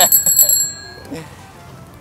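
A small bell rings once, a bright metallic ring that dies away within about a second.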